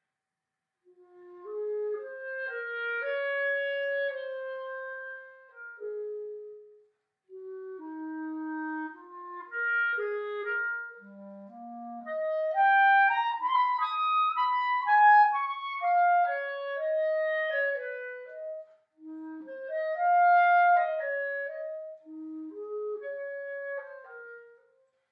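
Solo B-flat clarinet playing a slow, Adagio melody in phrases, starting about a second in. A run climbs to the loudest, highest notes around the middle.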